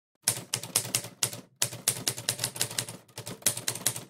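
Scattered hand-clapping: a quick, irregular run of sharp claps that breaks off briefly about a second and a half in.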